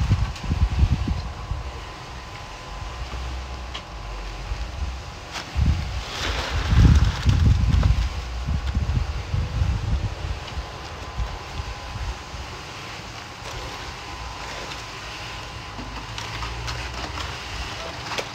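Wind buffeting the microphone in irregular low gusts, the strongest about seven seconds in, over a faint steady hum.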